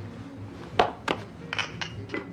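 A glass tumbler clinking on a bar counter: four sharp clicks in quick succession, the first the loudest and the last two ringing briefly like glass, over faint background music.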